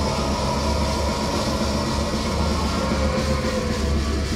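Live extreme metal band playing at full volume: drums and heavily distorted guitars in a dense, continuous wall of sound.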